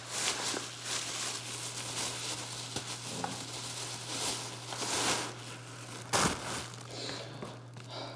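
Plastic bag crinkling and rustling as it is handled and pulled open, with a louder crackle a little after six seconds in.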